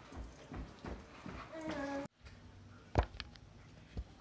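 Irregular light taps on a hardwood floor, typical of a dog's claws as it moves about, with a brief pitched vocal sound near the middle. The sound then cuts off abruptly, and about a second later there is a single loud knock as the phone is handled.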